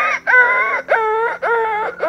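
A man mimicking with his voice a dog yelping in pain, as if its paw had been stepped on or it had been run over. It comes as a run of short, pitched cries, about two a second.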